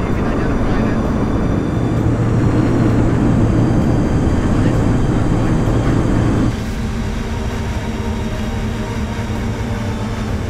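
Light aircraft's engine and propeller drone, heard inside the cabin as a loud, steady noise with a hum. About six and a half seconds in, it drops suddenly to a quieter drone with steady tones in it.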